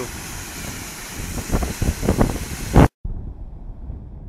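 Water pouring over a dam's curved spillway weirs: a steady rushing noise, with wind buffeting the microphone in gusts during the second half. It cuts off suddenly about three seconds in, leaving only faint background noise.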